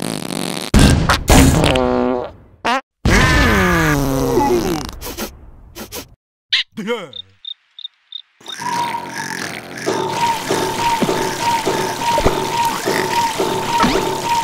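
Cartoon soundtrack of comic sound effects: two long, falling, drawn-out comic noises in the first half, then a quick run of about six short high beeps, then a steady high whine over fast clicking from about two thirds of the way in.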